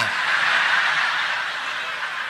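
Large audience laughing together, a steady wash of many voices with no single voice standing out, slowly dying down.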